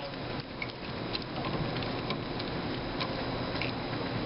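A few faint, irregular light ticks as safety wire is twisted and handled with pliers, over a steady background hum.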